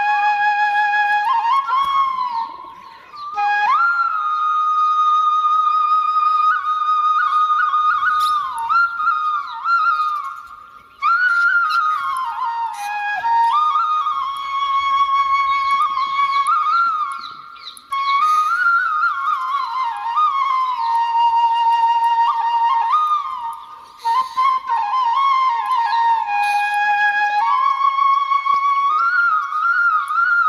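Indian flute playing a slow melody: long held notes that waver, glides between notes, and phrases broken by four short pauses.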